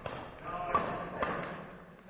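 Badminton rackets striking a shuttlecock in a doubles rally: two sharp smacks about half a second apart, with voices in the gym behind them.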